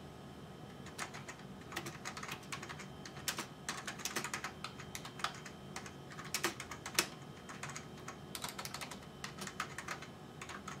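Typing on a computer keyboard: a run of irregular key clicks at an ordinary typing pace, with a short lull about three-quarters of the way through, over a faint steady hum.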